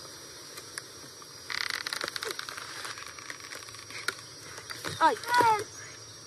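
A crackling rustle lasting about a second, starting about one and a half seconds in, then a boy's short cry of "ay" near the end.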